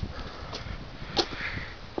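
A person sniffing sharply through the nose about a second in, over low steady outdoor background noise.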